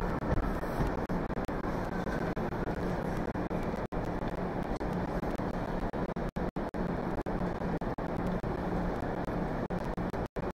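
Steady background noise of a large, near-empty indoor ice arena, a low, even hum with no distinct events, cut by a few brief dropouts in the recording.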